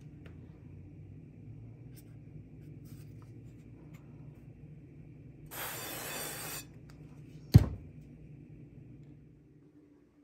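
Aerosol cooking spray hissing into a frying pan for about a second, midway through, over a low steady hum. About a second after the spray stops comes a single sharp knock, the loudest sound.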